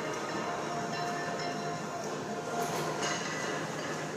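Steady background noise in a gym: an even rumble and hiss with no distinct clanks or knocks.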